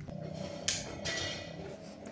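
Handling noise from a phone being turned around to face the other way: one brief rustle about a third of the way in, over quiet room tone.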